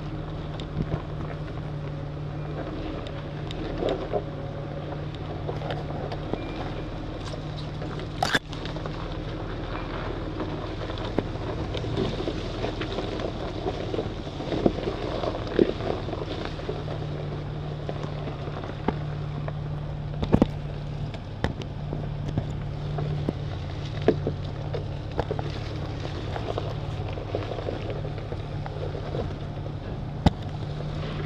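Off-road vehicle's engine running steadily at low speed as it crawls a rough dirt trail, with scattered knocks and rattles from the vehicle jolting over the bumps, the sharpest about eight seconds in.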